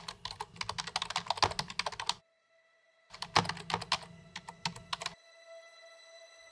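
Computer keyboard typing: two runs of rapid keystrokes with a pause of about a second between them, stopping about five seconds in. A steady droning tone comes in during the pause and holds under the typing.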